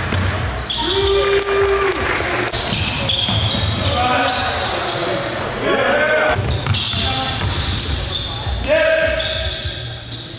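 A basketball bouncing on a hardwood gym floor during play, in several sharp bounces, with players' voices calling out in the echoing gym.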